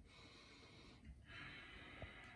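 Faint sniffing through the nose: two long inhalations, about a second each, smelling the aroma of freshly brewed pour-over coffee.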